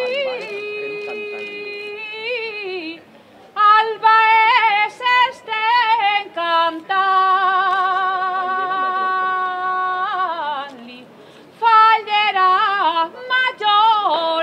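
A solo voice singing albaes, the traditional Valencian sung serenade: long held notes with vibrato broken up by quick ornamented runs, with two short breaks for breath.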